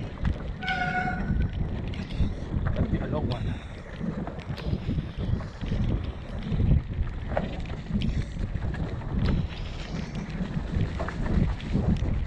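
Wind buffeting a helmet-mounted camera's microphone and a mountain bike rolling fast over a dirt trail, a continuous rough rumble with scattered sharp knocks from bumps. About a second in, a brief high-pitched tone sounds over it.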